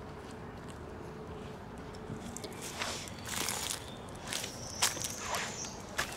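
Irregular footsteps on dry garden soil scattered with dead leaves, starting about two seconds in after a quiet start.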